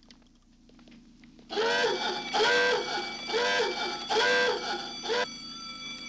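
Electronic alarm sound effect: five rising-and-falling whoops, about one every 0.8 seconds, starting about a second and a half in, over a low steady electronic hum.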